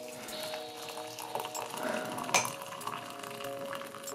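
Freshly boiled water being poured from a kettle into a ceramic mug over a teabag and spoon, with a single clink a little past halfway. Background music with held notes plays over it.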